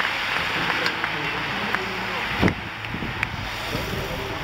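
A pack of racing bicycles rushing past at close range: a steady whoosh of tyres and air, with spectators' voices and a few sharp clicks. A thump about halfway through.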